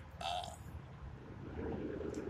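A man's short vocal sound, half a second long, about a quarter second in, then a low, steady background rumble.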